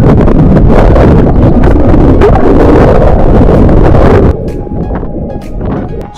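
Loud rushing, churning water noise on the microphone of an underwater camera mounted on a bamboo fish spear as it is thrust through a river. It cuts off about four seconds in, leaving background music.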